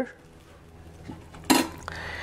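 A single sharp clink of metal or glass kitchenware about one and a half seconds in, with a faint ring after it and a softer tap just after. The rest is quiet.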